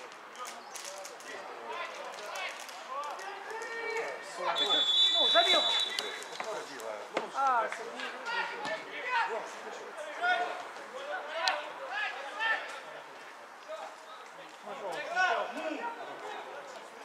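Footballers and coaches shouting across a football pitch. A referee's whistle gives one steady blast of about a second and a half, about five seconds in, the loudest sound here.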